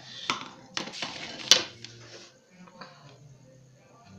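A wooden L-square pattern ruler being moved and set down over paper on a table: a few sharp knocks of wood on the tabletop, the loudest about a second and a half in, with paper sliding and rustling under it.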